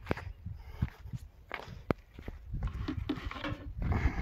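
Footsteps on dry field soil: irregular soft crunches and clicks as someone walks along the crop rows.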